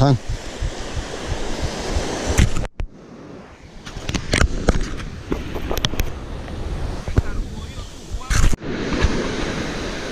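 Surf washing onto a sandy beach with wind on the microphone. The sound drops out for a moment about three seconds in, then goes on with scattered knocks and one loud knock near the end.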